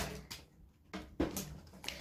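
A few faint clicks and taps from things being handled, with a brief hesitant 'euh' from a woman's voice about a second in.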